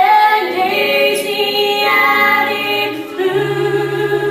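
A group of voices singing held notes in harmony in a stage musical number, changing pitch every second or so; about three seconds in, a low steady note enters beneath the voices.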